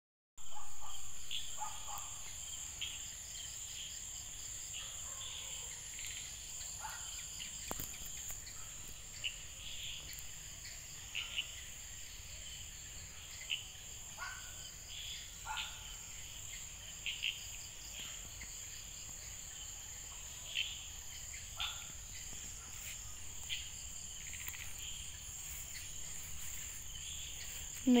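Evening insect chorus: a steady high-pitched trill that never lets up, with short chirps scattered through it every second or two.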